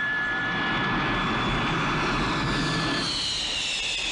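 Rocket belt (jetpack) in flight: a steady, rushing hiss with a high whistle. About three seconds in, the whistle gives way to a falling whine.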